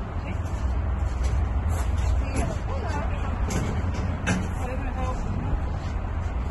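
Knocks and clanks of a heavy wheeled piece of equipment being pushed up into the back of a van, a few sharp knocks standing out over a steady low rumble.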